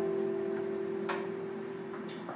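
The band's last chord ringing out and slowly fading away, one held note lingering, with two faint clicks, about a second in and near the end.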